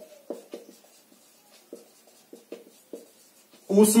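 A marker writing on a whiteboard: a string of short, irregular strokes and taps as a word is written out. A man starts speaking near the end.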